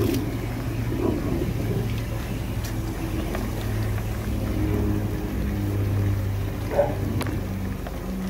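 High-pressure drain jetter running with a steady low drone while its jet hose is driven up a blocked kitchen drain line.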